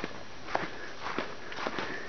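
Footsteps crunching on a sandy, gravelly trail: three steps, each a short crisp scuff, about half a second apart.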